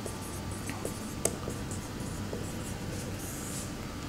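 Marker pen writing on a whiteboard: faint scratchy strokes of the felt tip against the board, with one sharp click about a second in.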